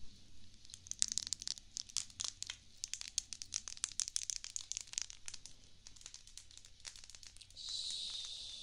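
Faint crinkling and light clicking as makeup brushes are handled, busiest in the first five seconds. A short, soft swish of brush bristles begins just before the end.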